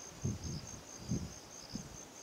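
An insect chirring steadily in a thin, high-pitched pulsed tone, with a few soft low thumps underneath.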